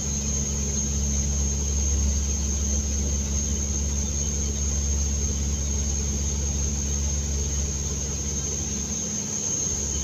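Steady drone of a Dash 8 Q200's twin Pratt & Whitney PW123 turboprop engines and propellers, heard inside the cockpit in flight, with a steady high whine over a deep hum that dips slightly near the end.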